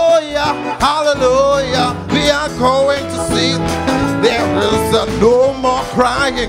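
Live gospel worship music: a man sings a long, wavering, drawn-out vocal line into a microphone over a band with guitar and bass.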